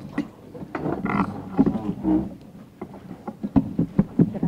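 Microphone on a lectern stand being handled and adjusted, picked up through the mic itself: a string of short knocks and rubbing thumps in the second half, after some muffled, off-mic talk.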